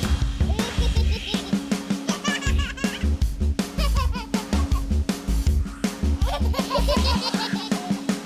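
A drum kit playing a steady, fast beat in a children's music track, with a baby giggling in short bursts about two seconds in and again near the end.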